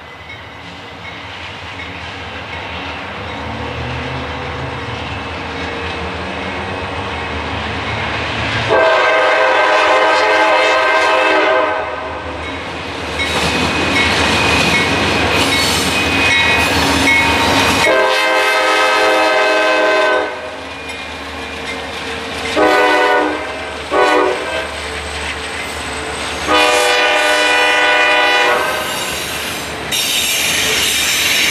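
CSX diesel freight locomotives approaching, their engine rumble building. The locomotive air horn then sounds two long blasts, two short ones and a final long one over the running train and its wheel noise.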